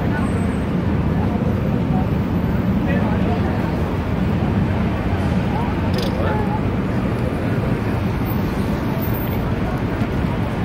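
Busy city street ambience: a steady rumble of traffic with the chatter of passing pedestrians.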